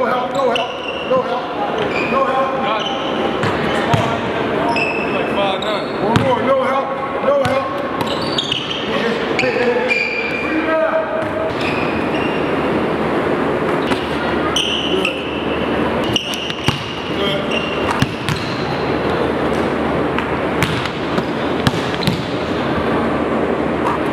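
Basketball bouncing on a hardwood gym floor in dribbling drills, with sharp bounces at irregular spacing and people's voices going on alongside.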